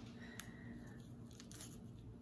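Faint handling of a chef's knife and a piece of green bell pepper on a wooden cutting board, with one small tap about half a second in, over quiet room hum.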